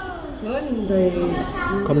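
Children's voices calling out, echoing in a large indoor swimming-pool hall, with a man beginning to speak near the end.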